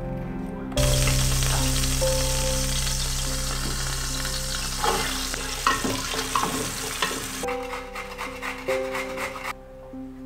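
Food sizzling in hot oil in a pot on a gas stove, starting suddenly about a second in and dying away after about six seconds, over soft background music. Near the end, rapid scraping strokes of carrot on a metal grater.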